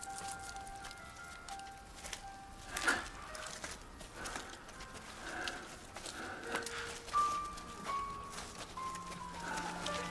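Quiet film score of long held notes that step to new pitches every second or so, with one sharp knock about three seconds in.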